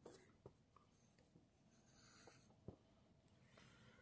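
Near silence: faint room tone with a few tiny clicks, one about half a second in and one near three seconds in.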